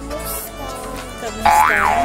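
Background music, with a loud cartoon 'boing' sound effect about one and a half seconds in, its pitch sweeping up and then back down.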